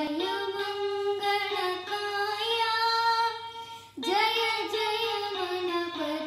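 A young boy singing a Kannada devotional song to Ganesha in long, held notes, accompanying himself on a small toy electronic keyboard. There is a brief pause for breath just before four seconds in, then the singing resumes.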